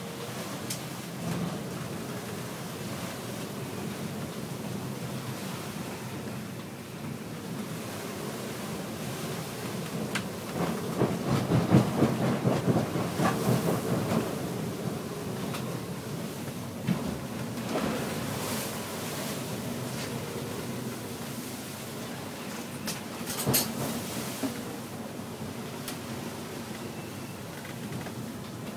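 Gale-force wind and breaking seas heard from inside a sailing yacht's enclosed pilothouse in 30–50 knot conditions: a steady rushing that swells louder for a few seconds around the middle, with a few sharp knocks in the second half.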